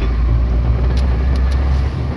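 Diesel engine of a tractor-trailer truck running steadily under way, a low drone heard from inside the cab along with road noise.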